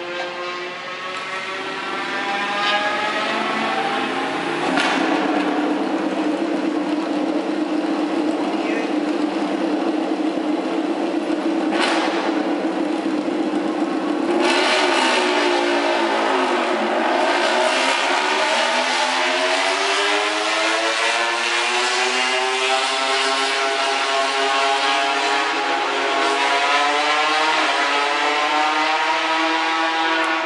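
Honda RC213V MotoGP bike's 1000cc V4 engine running in the pit garage at a steady high idle, with two sharp cracks about five and twelve seconds in. Its pitch dips a little past the middle, then climbs slowly to the end.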